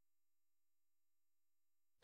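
Near silence: a pause in the narration.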